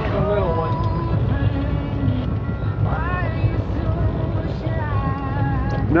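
A fishing boat's engine idling as a low steady rumble, with faint voices talking over it.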